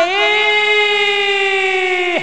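A voice holding one long, high sung note, steady in pitch and rich in overtones, that bends in at the start and falls away just after the end.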